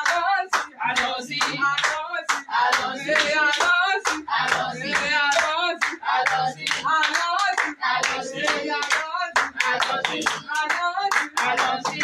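A group of worshippers clapping their hands in a steady rhythm while singing together.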